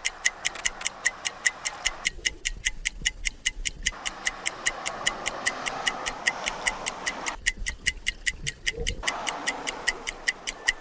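Ticking clock sound effect, fast and even at about four to five ticks a second, marking time on a breath-hold timer. A soft hiss fades in and out beneath the ticks.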